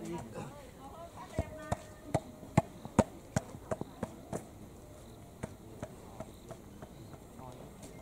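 Volleyball bounced repeatedly on a hard dirt court before a serve: a run of about eight sharp thuds, two or three a second, starting a little over a second in and stopping past the middle, with a few softer knocks later.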